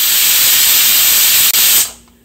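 Stovetop pressure cooker of toor dal on the boil, venting steam in a loud, steady hiss that dies away near the end: the cooker has come up to pressure.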